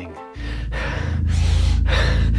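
Edited-in dramatic music cue that starts suddenly about a third of a second in: a deep, steady low drone with breathy swells rising and falling about twice a second.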